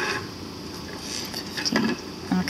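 HB pencil making short tick marks on paper along a plastic ruler: a soft tap at the start, then light scratches and taps.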